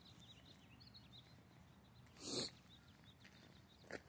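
A Weimaraner sniffing with its nose in the grass gives one short, sharp snort a little over two seconds in, with faint bird chirps behind.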